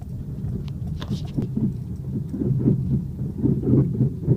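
Repeated low knocking from a car's front suspension while turning, about four knocks a second, louder in the second half. It is a fault noise that comes with the turn, which the owner calls real bad and links in part to noisy struts.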